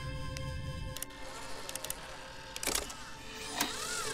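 Film soundtrack: a steady music drone under mechanical sound effects of robotic arms, with scattered clicks and short whirring glides. The loudest come about two and three-quarter seconds and three and a half seconds in.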